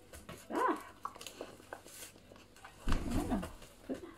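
A collie barking, once about half a second in and again, louder and deeper, around three seconds in.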